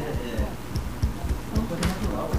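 Low, irregular thuds, several a second, under faint voices talking in the background.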